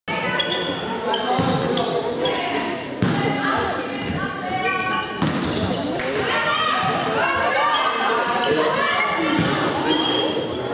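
Volleyball rally in a reverberant sports hall: the ball is struck with sharp smacks about four times, amid overlapping calls and shouts from the players.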